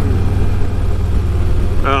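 Harley-Davidson Ultra Classic's Milwaukee-Eight 107 V-twin running steadily at cruising speed, a low even drone. A man's voice starts near the end.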